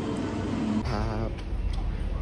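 A brief snatch of voice, then a steady low rumble of transit-station background noise with a few faint clicks.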